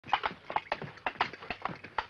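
Coconut-shell halves knocked together to mimic a horse's hooves: an uneven clip-clop of hollow knocks, often in quick pairs, at about four or five a second.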